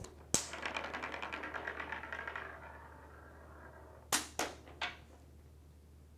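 Steel sphere on a clear plastic magnetic rail: a sharp click as it is let go, then a fast, fine rattling of the ball rolling along the rail that fades out over about two seconds. About four seconds in come three sharp clicks of the balls knocking together at the magnet, where the last ball is knocked on.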